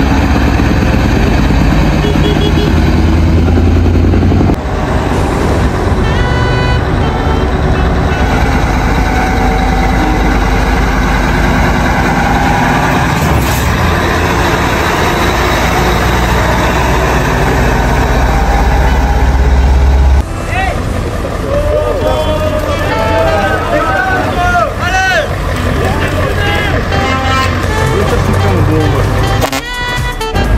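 Scania tractor units' diesel engines running as the trucks drive slowly past one after another, with a strong low rumble, and people talking nearby. The sound changes abruptly about four and twenty seconds in, where separate clips are joined.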